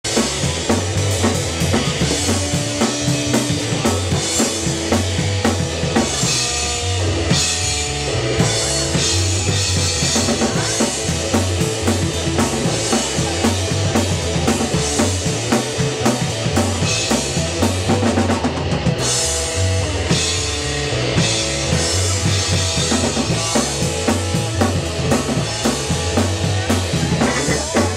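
Live band playing loud, dense music: a Tama drum kit's bass drum and snare drive a steady beat under the full band, with the singer at the microphone.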